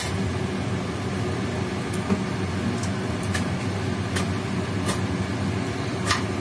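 Oil heating in an aluminium kadai on a gas stove, giving off sharp little pops and crackles about once a second over a steady hum.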